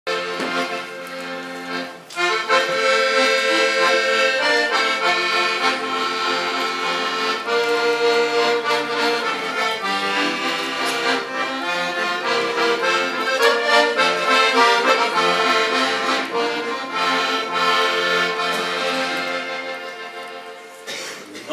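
Piano accordion playing an instrumental introduction to a hymn, sustained chords under a melody, with a short break about two seconds in and a fade near the end.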